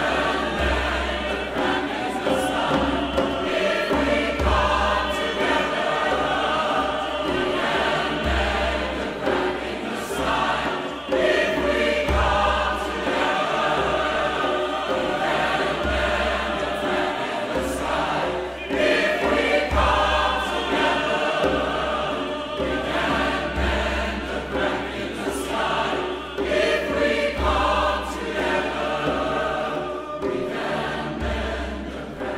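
Large mixed choir singing a sustained, full-voiced passage, over deep drum beats that swell every couple of seconds.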